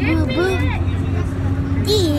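A person's voice making card-machine processing noises: a few wavering vocal sounds, then a steady hummed tone held for over a second, with a brief high squeak near the end. A steady low drone runs underneath.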